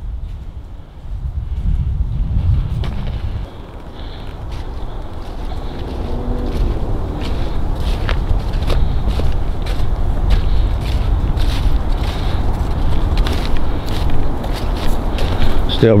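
Footsteps on dry leaves and track ballast, closer and more frequent from about six seconds in, over a low rumble of wind noise on the microphone.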